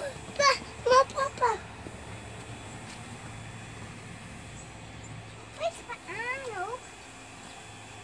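Young children's high-pitched squeals: a few short squeals in the first second and a half, then a long rising-and-falling squeal about six seconds in.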